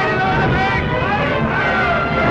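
Loud battle din from an old film soundtrack: many men yelling and shouting together over a continuous low rumble.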